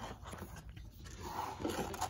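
A hardcover picture book being handled and opened: the cover and first page turned over, with paper rustling and sliding, busiest in the second half.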